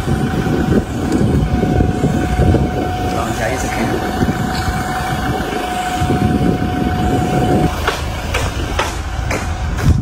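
A vehicle running with a low rumble and a steady whine that stops near the end, with voices over it.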